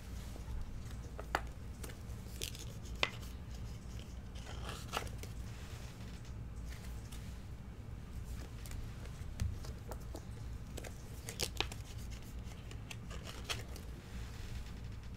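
1989 Upper Deck baseball cards being slid into clear plastic sleeves and a rigid top loader: soft plastic scraping and rustling with a few short, sharp clicks scattered through, over a steady low hum.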